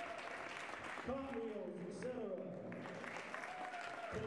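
Audience applauding, with an announcer's voice over a public-address system about a second in and again near the end.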